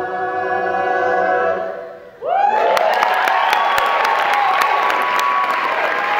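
An all-male a cappella group holds the song's final chord, which dies away about two seconds in. Audience cheering, whooping and clapping then starts suddenly and continues.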